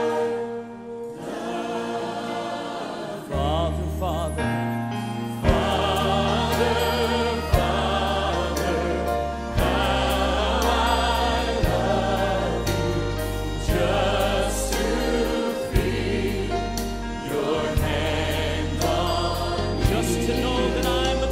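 A large choir singing a praise-and-worship song with band backing; a bass line comes in about three seconds in, followed by regular drum hits.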